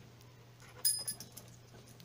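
Two Banham lock keys on a ring clinking as they are picked up, a single short metallic clink with a brief ringing about a second in, then a few faint small handling sounds.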